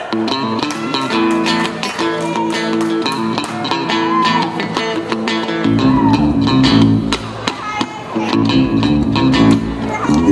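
Live rock band music led by a strummed electric guitar playing a rhythmic chord pattern, with bass guitar coming in strongly about six seconds in.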